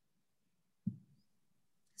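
Silence on a video-call audio line, broken once a little under a second in by a single short, low sound.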